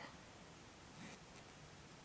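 Faint rubbing of yarn being worked on a metal crochet hook, with a slight scratch about a second in, barely above room tone.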